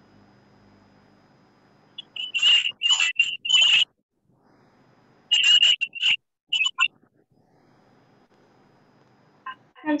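Loud, shrill bursts of noise coming through a participant's unmuted microphone on the video call, in two clusters a couple of seconds apart.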